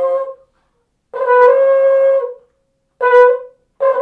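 Trombone playing a high note, with a held note dying away at the start. The same pitch is then sounded three more times as separately started notes: one of about a second and two short ones near the end, with short silences between.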